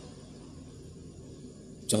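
A pause in speech: faint room tone with a low steady hum. A man's voice starts again right at the end.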